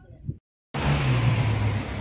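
An abrupt cut to a split second of silence, then loud street traffic noise: a car driving past close by, its engine's low tone dropping slightly in pitch as it goes.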